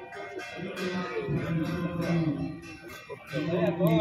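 Devotional music with a man singing long held low notes, the held notes breaking off and starting again twice.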